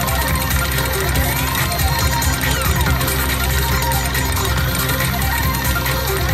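Slot machine bonus music playing steadily while the Monopoly bonus wheel spins, an electronic tune with short gliding notes.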